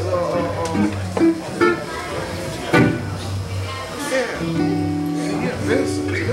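Live band playing: bass guitar notes under held keyboard chords, with a man's voice over the music.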